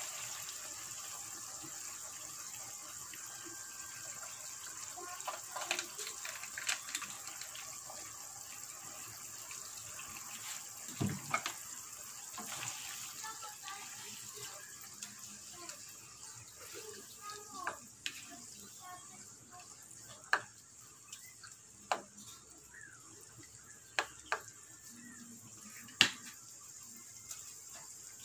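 Pork and tomato sauce simmering in a wok on the stove, a steady watery hiss that fades a little, with a few short sharp knocks of a utensil against the wok in the second half.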